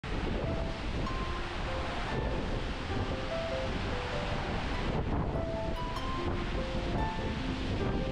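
Steady rush of a waterfall and a cascading rocky stream, with light music of short, sparse single notes over it.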